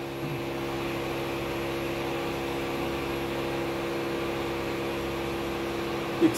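A steady mechanical hum, even in pitch and level throughout.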